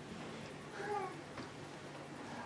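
Quiet room tone with a faint, brief voice-like call about a second in, followed by a small click.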